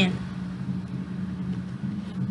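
Steady low hum with a faint hiss beneath it, unchanging throughout.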